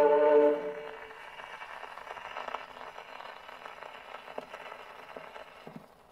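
HMV 102 portable gramophone playing a 78 rpm record: a choir's held final chord ends about half a second in, and then only the record's surface hiss and faint crackle go on under the needle.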